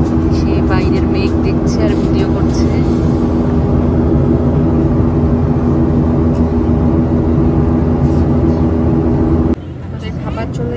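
Airliner cabin noise in flight: a loud, steady drone of engines and rushing air with a constant low hum. It cuts off suddenly just before the end.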